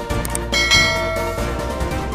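A bell-like chime sound effect rings out about half a second in, over steady background music, and fades over about a second. Two short clicks come just before it.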